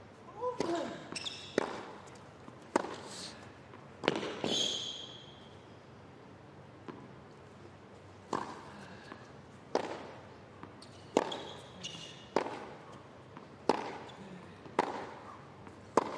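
Tennis ball struck back and forth with rackets in a baseline rally on a hard court: sharp hits about every second and a half, with a short lull in the middle.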